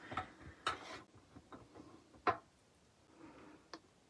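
Small taps and rustles of a thin cutting die and stamped cardstock being lined up by hand on a die-cutting machine's cutting plate, with a few soft clicks, the loudest just after two seconds in.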